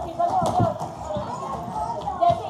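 Background voices in a busy hall, with a single sharp knock about half a second in.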